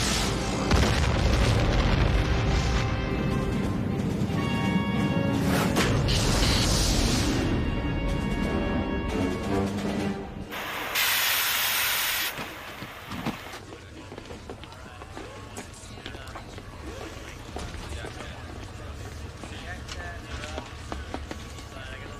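Music over deep explosion booms as a spacecraft blows up, then a burst of hissing gas venting for about two seconds, about ten seconds in. After that the sound drops to a faint hangar background.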